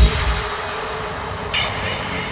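Trance track breaking down: the kick drum and bassline cut out at the start, leaving a reverberating noisy wash, with a short bright stab about one and a half seconds in.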